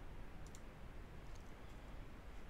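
Faint steady hiss with a couple of light clicks, a computer mouse clicking to advance a presentation slide.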